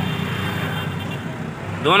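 Steady low background hum and noise during a pause in speech, easing slightly, before a man's voice starts again near the end.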